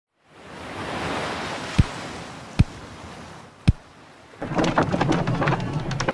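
A steady rushing background fades in, and a hammer strikes a wooden beam three times, about a second apart. A little over four seconds in, busy work noise with voices and more knocking takes over.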